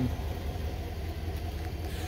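Steady low outdoor rumble with a faint hiss, no distinct events.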